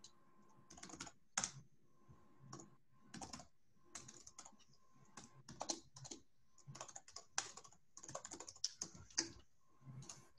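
Computer keyboard typing: faint keystrokes in quick, irregular bursts with short pauses between them.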